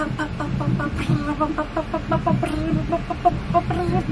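A high school band playing: a quick run of short, pitched notes, several a second, with lower beats underneath.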